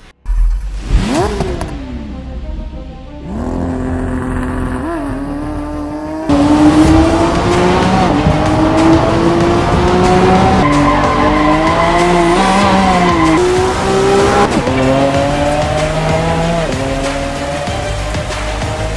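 A car engine accelerating hard through the gears: its note climbs steadily, then drops abruptly at each shift, several times over. It opens with a low thump and a short whoosh.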